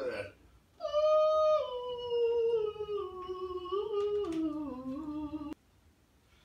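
A high wordless voice humming or singing a slow melody, holding notes and stepping down in pitch, until it cuts off sharply about five and a half seconds in.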